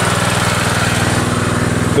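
Small petrol engine of a portable water pump running steadily, draining water from the pits.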